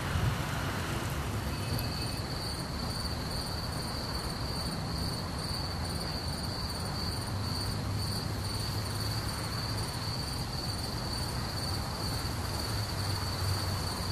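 Crickets chirping in a steady high-pitched trill that starts about a second and a half in, over a faint low hum of outdoor background noise.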